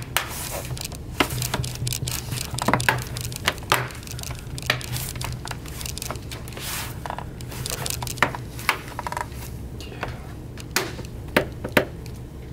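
Plastic bottom panel of a laptop being pressed back onto the chassis by hand: irregular small clicks and snaps as its clips seat, with a few sharper snaps near the end.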